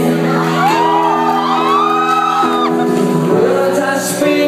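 Live music: a male singer over steady sustained instrumental backing, with high-pitched shouts and whoops from the audience from about half a second to nearly three seconds in.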